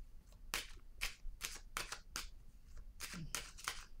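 A deck of cards being shuffled by hand: a string of short, crisp swishes, about two or three a second.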